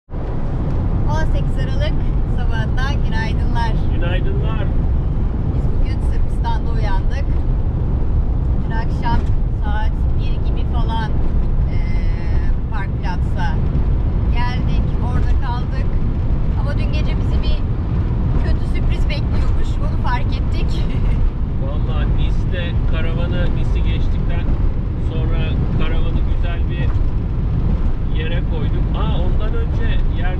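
Steady road and engine noise inside the cab of a Fiat Ducato camper van driving at highway speed, with people talking over it.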